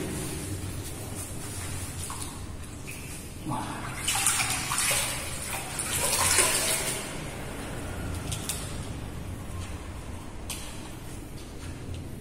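Hands scooping and splashing water in a small masonry pool, loudest between about four and seven seconds in.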